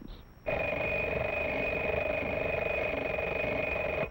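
Telephone bell ringing: one continuous trilling ring of about three and a half seconds that starts about half a second in and cuts off suddenly.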